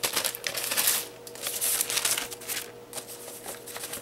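Tissue paper rustling and crinkling in irregular bursts as it is lifted and folded back inside a gift box.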